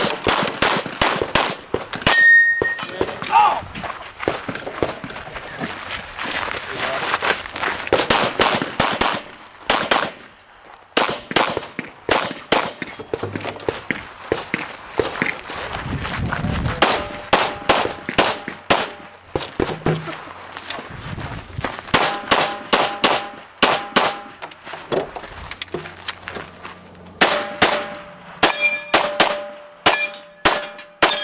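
Glock 34 9mm pistol fired in rapid strings, with a short pause about ten seconds in. From about the middle on, the shots are mixed with the ringing of steel targets being hit.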